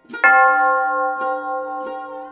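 Background music of a plucked string instrument: a loud note struck a fraction of a second in and ringing on, followed by further single plucked notes.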